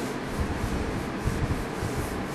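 Felt-tip marker rubbing across the board in a quick series of short strokes as the rungs of a ladder are drawn one after another.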